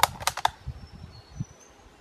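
Scoped hunting rifle's action being worked after a simulated shot: a quick run of five or six sharp metallic clicks within the first half second, then a couple of faint knocks.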